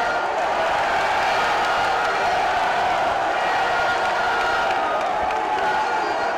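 Boxing crowd in an indoor arena shouting and cheering steadily, a dense wash of many voices without a break.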